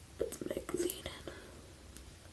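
A boy whispering under his breath for about a second, with a few light clicks mixed in.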